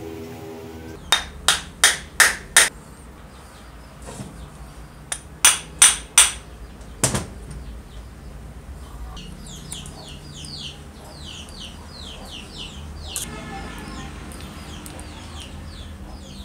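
Sharp knocks on an old drill's gear housing: a quick run of five, then four more, then a single one. A little later, birds chirp rapidly in the background for a few seconds.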